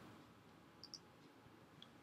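Near silence with two faint computer-mouse clicks, one a little under a second in and one near the end.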